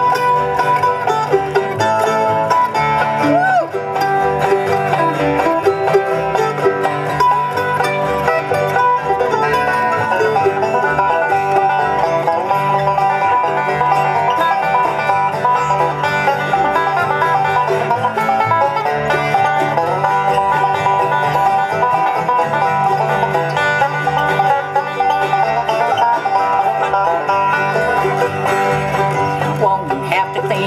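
Live bluegrass string band playing an instrumental break, the banjo leading over acoustic guitar, mandolin and an upright bass.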